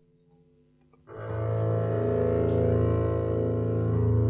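About a second of near silence, then a loud, low sustained chord enters and holds steady: bowed double bass long notes with other sustained instrument tones layered above.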